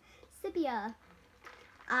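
A girl's voice: one short vocal sound falling in pitch about half a second in, then speech starting at the very end.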